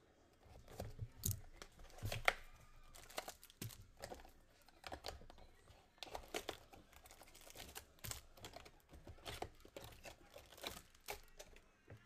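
Plastic shrink wrap on trading-card hobby boxes being slit with a folding knife and torn away, a run of irregular crinkling and tearing crackles with the odd knock of cardboard boxes being handled.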